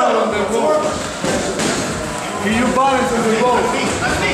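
Men's voices talking and calling out, with dull thuds of boxing gloves landing at close range in a clinch.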